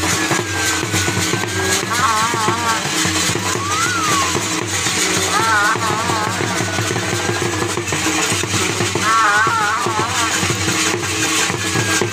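Dhol drums beating a steady rhythm, with short warbling high-pitched phrases breaking in every few seconds and a couple of sliding whistle-like tones between them.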